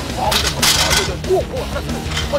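Excited wordless shouts from several voices over a steady low music bed, with two short bursts of hissing noise in the first second.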